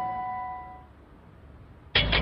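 A bell-like chime ringing out and fading away over about a second, the closing sound of a TV commercial, then a short lull. Another commercial's music starts abruptly near the end.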